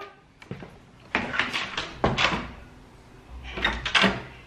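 Interior door being opened with a newly fitted lever handle: the latch clicks and the door knocks a few times, about a second in, at two seconds and again near the end. The new handle replaces one whose internal spring had broken, and its latch now works freely.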